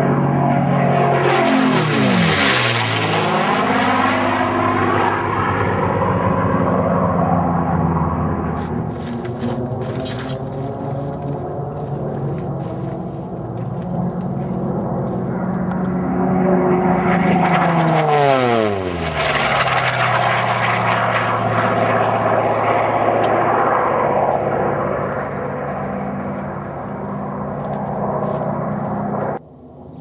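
Unlimited-class piston-engined racing warbirds running at full power and making two fast, low passes, about two seconds in and again near eighteen seconds. Each pass has a sharp drop in pitch as the aircraft goes by. The engine drone carries on between the passes.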